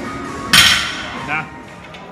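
A loaded barbell with heavy weight plates crashing to the gym floor once, about half a second in, with a metallic clank that rings out briefly: the lifter's grip gave out on a near-maximal deadlift.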